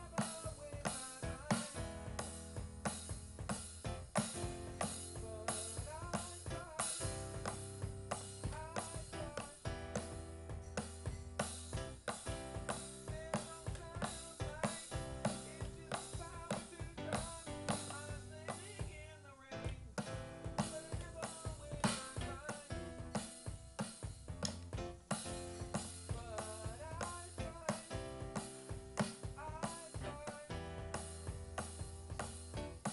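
A band plays a pop-rock song: a drum kit keeps a steady, driving beat under keyboard chords and a bass line from a red Nord stage keyboard. The bass briefly drops out a little past the middle, then comes back.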